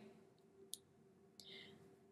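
Near silence: room tone in a pause between speech, with one faint click a little under a second in.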